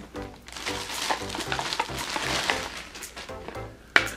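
Clear plastic packaging bag crinkling and rustling as blue plastic sock-aid parts are handled and pulled out, over background guitar music. A sharp click comes right at the end.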